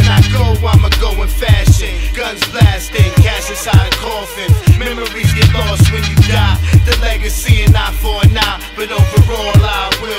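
Hip hop track: a drum beat and a held bass line, with vocals over them.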